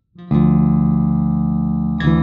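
The song begins about a third of a second in with a loud, sustained electric guitar chord over bass that rings out and slowly fades.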